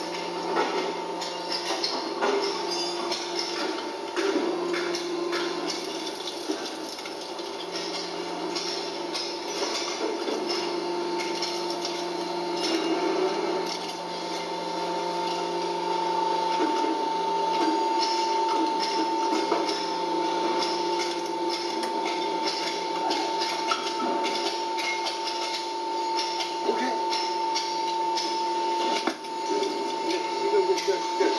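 Stator-dismantling machine running with a steady hum, with frequent metal clinks and clanks as copper windings are pulled out of an electric-motor stator.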